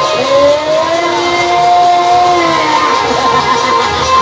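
Live jasgeet folk music: a steady drum beat under a long held melodic note that slides up just after the start and falls away about three seconds in.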